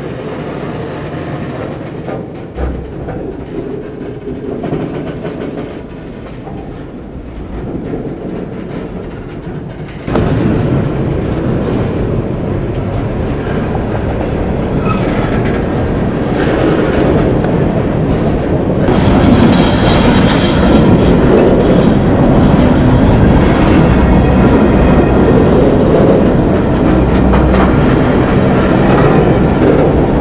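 Freight train cars rolling past at close range, steel wheels running on the rails in a continuous heavy rumble and clatter that grows louder about a third of the way in and again past the middle.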